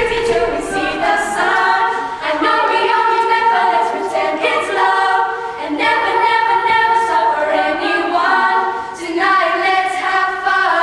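A primary-school vocal group singing a cappella in harmony, the voices holding chords that change every second or so.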